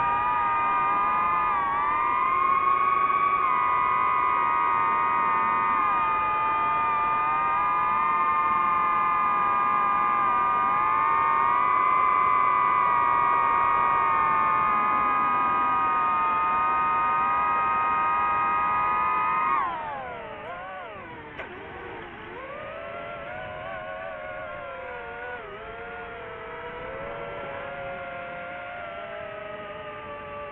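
Multirotor drone's motors and propellers whining steadily in flight, several close tones wavering slightly. About two-thirds of the way through the whine drops sharply in pitch and loudness as the motors slow, then carries on lower and more unsteady.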